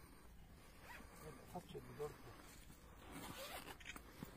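Zipper on a black bag being pulled open, a scratchy run of noise near the end, with a few quiet voices talking earlier on.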